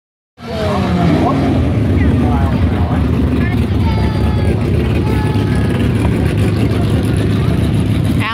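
Drag-racing cars' engines running loudly at the starting line as a steady low drone, with short rises and falls in pitch in the first couple of seconds as they rev.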